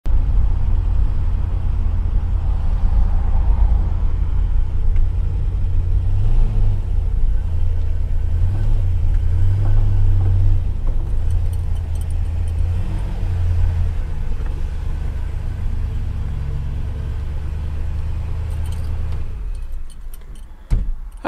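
A 1966 Plymouth Barracuda Formula S's 273 V8 runs as a steady low rumble while the car creeps into the shop, with a few short rises in engine speed in the middle. The engine shuts off just before the end.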